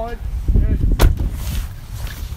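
Phone microphone handling noise: low rumbling and thudding as the phone is jostled and rubbed against clothing, with one sharp knock about a second in.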